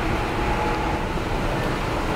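Steady running noise inside a moving passenger train car, a low rumble with a faint steady whine.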